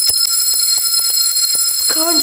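A brass school hand bell rung hard and fast, its clapper striking about six times a second over a continuous loud, shrill ring.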